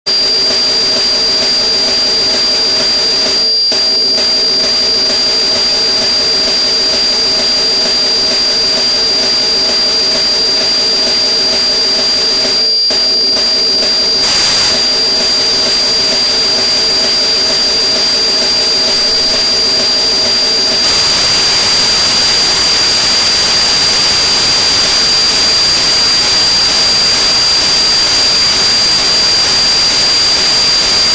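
Harsh electronic noise music: a loud, steady hiss with a high whistling tone, over a few low drone tones that fade out about halfway through. Two brief dropouts come early on, and the hiss turns louder and brighter about two-thirds of the way in.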